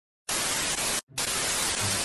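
Television static: an even white-noise hiss that starts a moment in, drops out briefly about a second in, then resumes.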